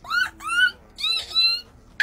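A woman imitating a monkey with her voice: four short, high-pitched, squeaky hooting cries, each sweeping up in pitch.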